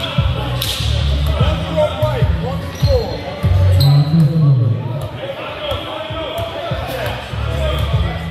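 Indoor basketball play in a gym hall: sneakers squeaking on the court floor in short, scattered chirps and the ball bouncing, under the echoing voices of players and spectators.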